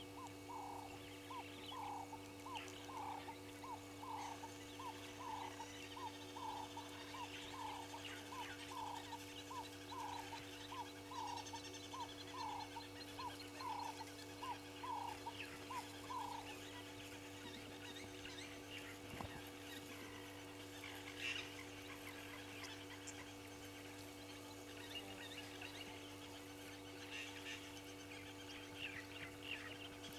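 An animal calling a steady series of short, falling notes, about two a second, which stops about sixteen seconds in. Scattered higher chirps follow, over a steady low hum.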